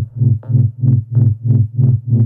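Techno music: a low synth bass note pulsing evenly about four to five times a second, with fainter higher tones on each pulse.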